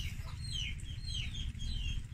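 Birds chirping: a run of short, high chirps, each sliding down in pitch, several a second, over a low steady rumble.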